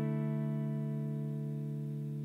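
An electric guitar chord ringing out and slowly fading, with no new notes struck.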